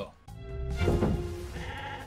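A sheep bleating over film-trailer music.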